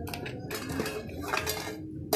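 Cacao beans rattling and scraping against a metal wok in irregular strokes as they are stirred during roasting.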